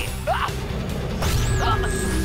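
Cartoon action sound effects over a music score: a crash-like impact about a second in, followed by a high electronic zap that rises and falls.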